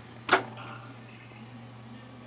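One sharp click about a third of a second in as the new Taco circulator pump is unplugged, over a low steady hum that barely changes once the pump stops.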